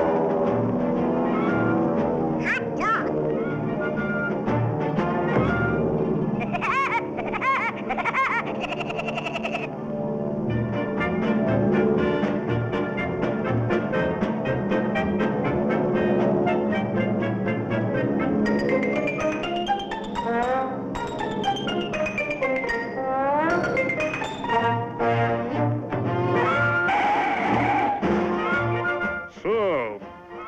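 Orchestral cartoon score led by brass, with quick rising and falling runs partway through the second half.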